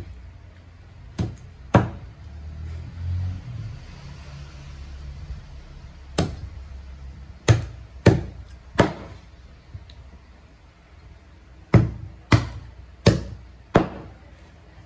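A wide-bladed cleaver chopping through raw chicken onto a plastic cutting board: about ten sharp chops in groups of two to four, with pauses between them.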